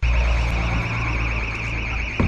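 Electronic alarm siren sounding continuously, a high warbling tone that wobbles about eight times a second, over a steady low rumble; it starts abruptly.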